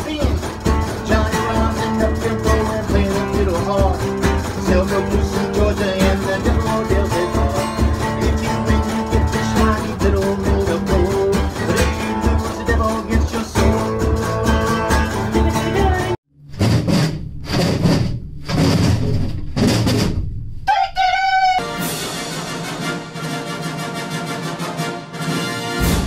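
A top-loading washing machine thumps out a steady low rhythm, about two to three beats a second, while an acoustic guitar is strummed along with it. About 16 seconds in the sound cuts off abruptly and a few seconds of a different, broken sound follow. Near the end an orchestral fanfare begins.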